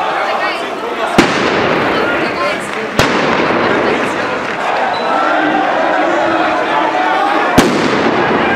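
Three sharp firecracker bangs over the steady din of a shouting crowd: one about a second in, one at about three seconds, and one near the end.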